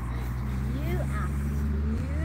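A low, steady engine hum, like a vehicle running nearby, with faint voice-like calls over it.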